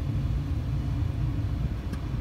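Suzuki Baleno's engine idling, a steady low rumble heard from inside the cabin, with a small click near the end.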